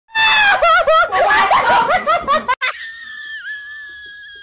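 A person screaming loudly, the pitch wavering up and down, cut off abruptly about two and a half seconds in; then a long, steady high-pitched squeal.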